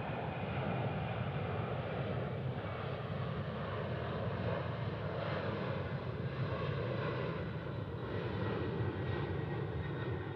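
Jet engines of a four-engine Boeing 747-400 freighter at climb power as it passes low overhead after takeoff. The noise is steady and heavy, with a faint high whine above it.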